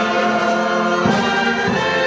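Brass band playing slow, sustained processional music, with a low beat about a second in.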